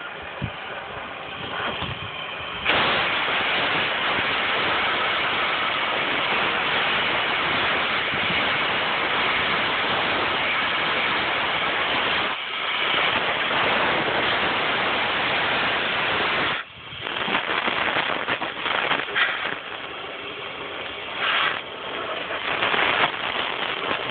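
Propane cutting torch flame hissing steadily against rusted steel, jumping louder about three seconds in. It holds, with one brief dip, until about two-thirds of the way through, then comes and goes unevenly.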